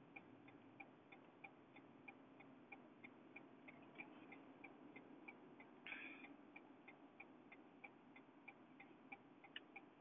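Car turn-signal indicator ticking faintly and evenly inside the cabin, about three clicks a second, with a short hiss about six seconds in.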